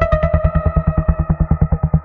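Dark techno music: a fast, evenly chopped bass synth pulse under held higher synth tones, with a new high note coming in right at the start. The pulse stops abruptly at the end.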